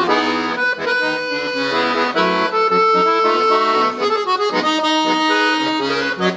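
Victoria piano accordion played solo: a right-hand melody on the keyboard over left-hand bass buttons, moving note to note with some notes and chords held for about a second.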